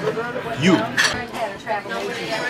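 Dishes and cutlery clinking in a restaurant, with one sharp clink about a second in.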